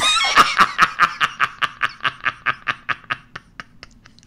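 A man laughing: a long run of quick, even 'ha' pulses, about six a second, that grow fainter and die away about three and a half seconds in.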